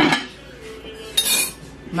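Metal cooking utensils and a pot clanking at the stove: a knock at the start, then a sharp metallic clink with a short ring a little over a second in.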